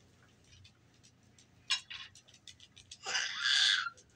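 Light clicks of wooden beads and pieces on a toddler's bead-maze activity cube, a sharper click about halfway through, then a breathy hiss lasting about a second near the end.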